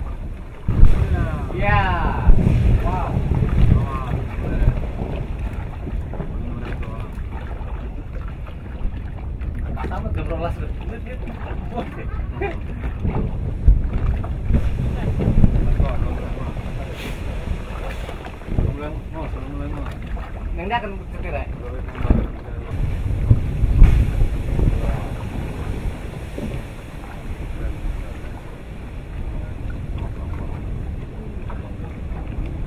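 Wind buffeting the microphone aboard a boat over a steady low rumble, with people's voices calling out briefly now and then.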